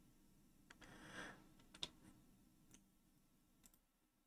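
Near silence, broken by a few faint, scattered computer mouse clicks.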